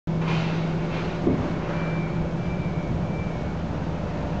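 A steady low engine hum, with three faint short high beeps in a row from about two seconds in.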